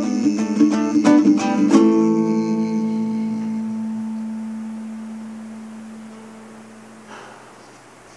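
Acoustic guitar playing a few quick strums, then a final chord about two seconds in that is left to ring and die away slowly, closing the song. A faint tap sounds near the end.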